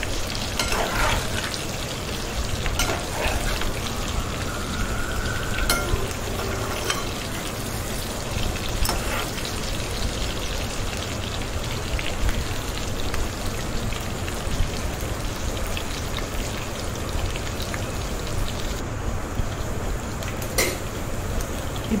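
Food frying in hot oil in a pan: a steady sizzle, with a few sharp clicks scattered through it.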